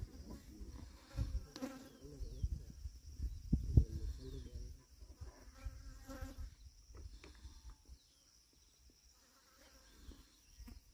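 Insects droning steadily at a high pitch, with low rumbling thumps on the microphone through the first half, loudest about four seconds in, that die away after about five seconds.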